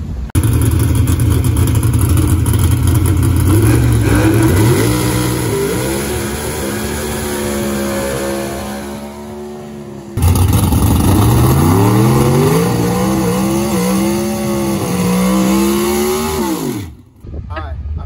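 Competition Eliminator drag car engines at full throttle: a burnout with the engine held high, then the pitch climbing and stepping up through gear changes as the car launches and pulls away. The sound cuts about halfway through to a second run that climbs and shifts the same way before dropping away near the end.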